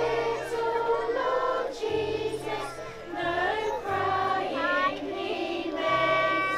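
A group singing a song together, voices of adults and young children mixed. Steady low bass notes sound underneath, changing about once a second.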